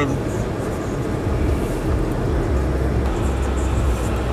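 Steady road and engine noise inside a moving car's cabin, under a deep bass line from the car stereo that steps between low notes and grows stronger toward the end.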